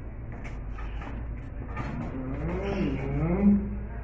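A man's drawn-out groans of effort, wavering up and down in pitch and loudest near the end, as he strains to move himself in a wheelchair. A low steady hum runs underneath.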